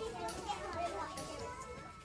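Quiet, indistinct chatter of several people's voices in a candy shop, no single speaker clear.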